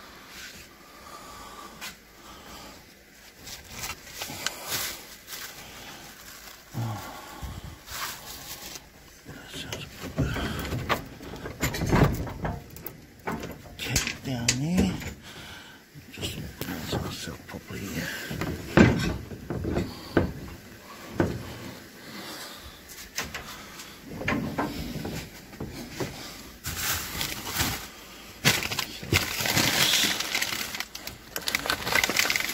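Plastic bin bags and food packaging rustling and crinkling as they are pulled about and sorted in a dumpster, with irregular knocks and clicks from cardboard and packaged items being shifted, busier in the second half.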